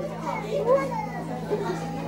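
Chatter of a crowd of guests, with children's voices among it and a couple of rising-and-falling calls in the first second.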